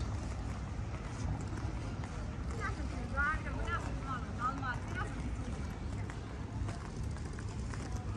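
Outdoor street ambience while walking on a stone promenade: a steady low rumble with faint footsteps, and distant voices of passers-by for a couple of seconds in the middle.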